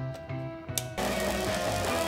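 Background music with a steady bass line; about a second in, an electric arc welder strikes up and its arc gives a steady hiss over the music.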